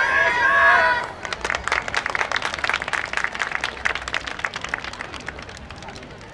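A loud, drawn-out shout for about the first second, then a small audience applauding, the clapping thinning and fading out by near the end.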